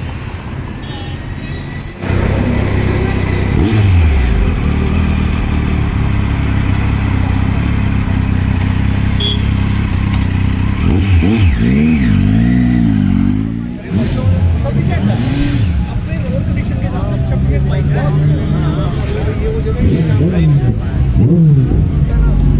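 Motorcycle engine running close by, starting about two seconds in, revved a few times so its pitch rises and falls as the bike moves off, with voices around it.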